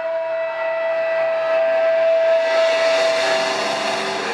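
Electric guitar amp feedback: one steady high tone held over a distorted wash, growing louder.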